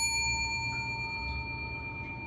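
Notification-bell sound effect: a bell-like ding ringing out and slowly fading, several steady tones sounding together.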